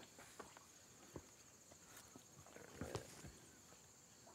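Near silence: a faint steady high-pitched insect drone, with a few soft knocks about a second in and near three seconds in.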